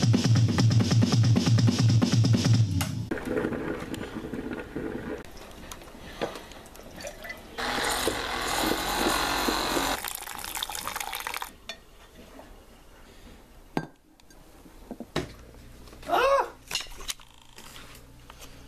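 Music with a steady bass pulse for the first few seconds, then hot coffee being poured from a carafe into a ceramic mug, a steady rush of liquid lasting about four seconds.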